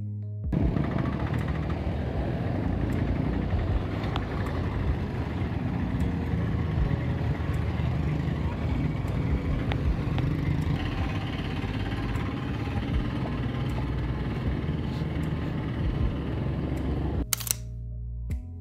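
Busy town-street noise of traffic and passers-by, with motorcycles among it, under background music. Near the end a single camera-shutter click sounds and the music alone returns.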